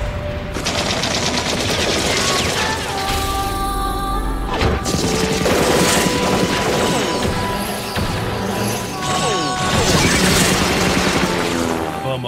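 Anime battle sound effects: sustained rapid machine-gun fire with rounds striking concrete, and one heavy impact about five seconds in, over music.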